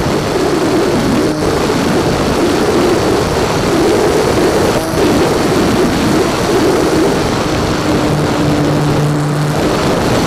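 Electric motor and propeller of a small foam RC plane in flight, picked up by its onboard keychain camera's microphone together with wind rush; the motor's pitch wanders, settling into a steadier tone for a couple of seconds near the end.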